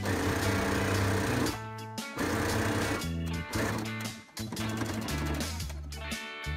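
Background guitar music with a steady bass line, over an electric sewing machine running in short stretches as it stitches, the longest run in the first second and a half.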